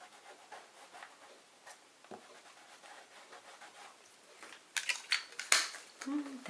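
Fingertips rubbing metallic rub-on paint onto a paper-collaged canvas: soft, irregular scuffing strokes. Near the end come a few louder scrapes and a sharp click.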